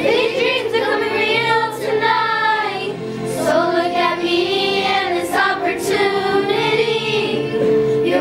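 A pop song playing from a recorded backing track, with continuous singing over sustained low notes.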